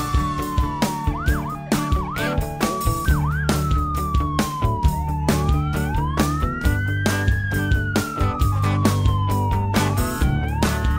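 Emergency vehicle's electronic siren on a slow wail that climbs and falls over several seconds, with a few quick yelps about a second in. Music with a steady beat plays underneath.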